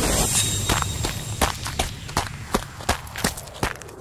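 A brief rushing sweep, then a steady series of sharp taps, about three a second.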